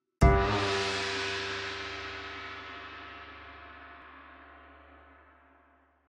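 A single gong-like stroke about a quarter second in, ringing with many tones and fading out slowly over about five seconds.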